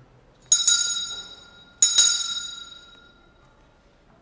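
Altar bells rung twice at the elevation of the chalice, the signal for the consecration: two bright metallic shakes, each with a quick double strike, ringing on and fading out.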